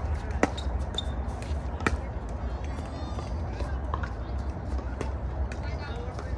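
Pickleball paddles hitting a plastic ball in a rally: sharp pocks, the two loudest about a second and a half apart near the start, with fainter ones later, over a low steady rumble.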